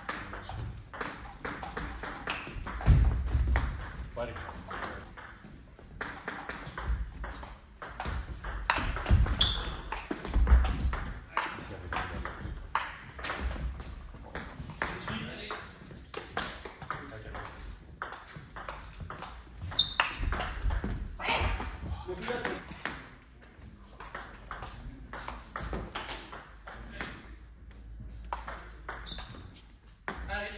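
Table tennis rallies: the ball clicks off the bats and bounces on the table in quick alternation, many strikes throughout. A few heavier low thuds stand out among them.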